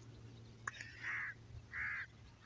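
Two faint, short bird calls about three-quarters of a second apart, with a light click just before them.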